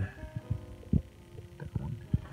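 A series of dull, low thumps a few tenths of a second apart over a faint steady hum: handling noise from the phone being moved around the engine bay.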